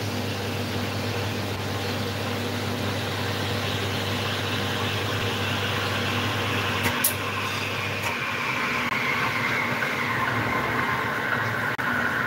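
Espresso machine running with a steady low hum under a hiss, and a faint whistle that slowly falls in pitch. A touch button is pressed with a couple of light clicks about seven seconds in, and the low hum stops just after.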